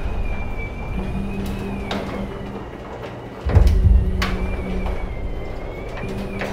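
Garage door opener running with a steady hum as a sectional garage door rolls up, with clicks and a deep boom about three and a half seconds in.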